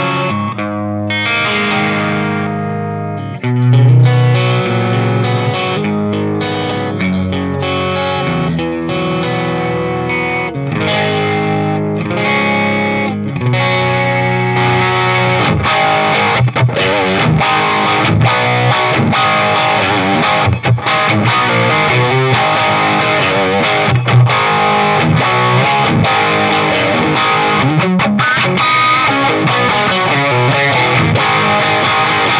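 Fender Custom Shop '57 Stratocaster electric guitar played with distortion: held, ringing chords that change about once a second, then from about halfway denser, brighter, faster playing.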